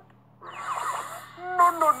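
Cartoon sound effect of crackling electricity as lightning bolts are hurled, starting about half a second in. Near the end a man's voice cries "No, no" over it.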